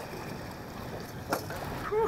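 Steady wind and water noise on an open fishing boat, with a single sharp knock on the deck about a second and a half in.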